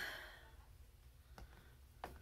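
A woman's soft, breathy exhale fading out over the first half second, then near silence with one faint click about one and a half seconds in.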